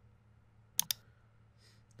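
Computer mouse double-clicking: one quick pair of clicks about a second in, over quiet room tone.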